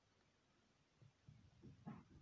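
Near silence: room tone, with a few faint, soft low sounds in the second half.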